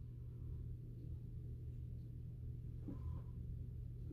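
Quiet room tone with a steady low hum, and a faint brief sound about three seconds in.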